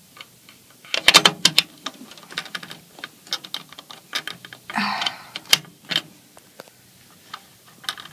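Sharp clicks and taps of a screwdriver and fingers on a plastic screw-in fuse holder and its cap on a fire alarm control panel: a quick run of clicks about a second in, then scattered single ticks and a brief scrape midway.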